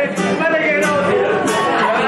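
A man singing live to his own strummed steel-string acoustic guitar, the strums falling in a steady rhythm under the vocal line.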